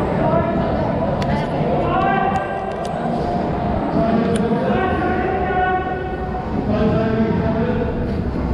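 Indistinct voices of people talking, with a few sharp clicks in the first half.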